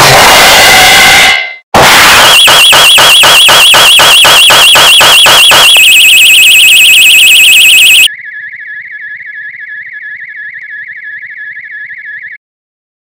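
Loud, heavily distorted electronic sound effect: a short noisy burst, then from about two seconds in a warbling alarm-like tone pulsing about four times a second, louder after about six seconds. At about eight seconds it drops to a quieter, steady warble.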